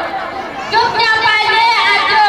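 Speech only: a performer's lines spoken in Maithili into a stage microphone, with short pauses between phrases.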